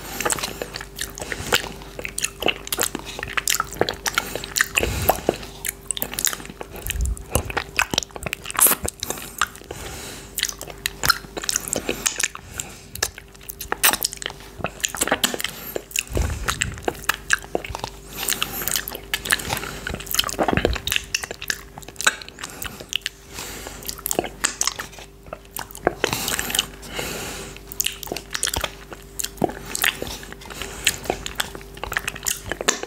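Close-miked mouth sounds of licking thick coconut yogurt off a finger: a dense, irregular stream of wet smacks, sucks and lip clicks.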